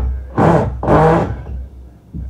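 A car engine revved hard twice in quick succession, each rev rising and falling back, with a low idling rumble between.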